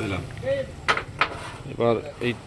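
Two sharp clicks of wooden carrom pieces on the board, about a third of a second apart.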